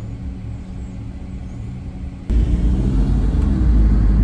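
Car cabin noise: a steady low engine and road hum, then a sudden, much louder deep rumble for the last second and a half or so, which cuts off sharply.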